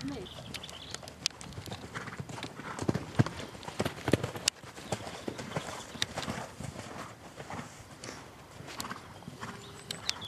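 Hoofbeats of a ridden horse cantering on a loose arena surface, an uneven run of muffled strikes that is loudest in the middle.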